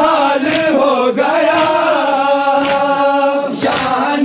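A group of men chanting an Urdu noha in unison, the voices sliding down and then holding one long drawn-out note, with a sharp slap about once a second from hands striking chests in matam.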